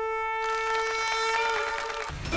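Dramatic background score: one long held note with a wind-instrument sound, more instruments joining about half a second in and the note shifting slightly in pitch near the end.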